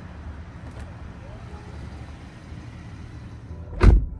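Rolls-Royce Wraith's rear-hinged driver door swinging shut. It closes near the end with a single deep thud, and the outside noise drops away once it seals.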